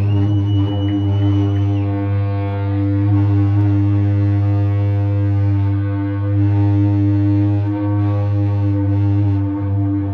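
Amplified electric guitars and bass holding one sustained droning chord with no drums. A thin, high feedback whistle sounds over it for the first couple of seconds, rising slightly before it stops.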